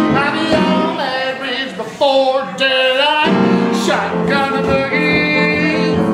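Boogie-woogie piano played live with a man singing over it; a long sung note is held near the middle.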